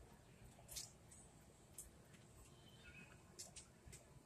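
Near silence: faint outdoor ambience with a few brief, faint high-pitched chirps.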